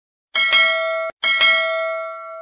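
Notification-bell sound effect: a bright bell ding sounded twice, each with a quick double strike. The first is cut off abruptly; the second rings on and fades.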